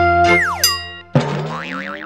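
Cartoon-style channel logo jingle. A held synth note, then a quick falling whistle-like glide about half a second in. A bright chord enters just after a second, with a high tone wavering up and down above it.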